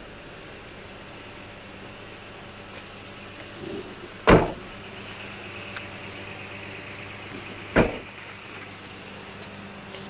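A pickup truck's cab door slams shut about four seconds in, followed about three and a half seconds later by a second sharp knock, over a steady low hum.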